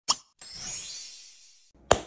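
Intro sound effects: a short pop, then a bright, sparkling shimmer that fades away over about a second. Near the end, a single sharp hand clap.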